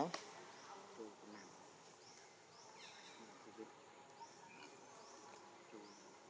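Faint outdoor background: a soft insect hum with a few faint, short high chirps now and then.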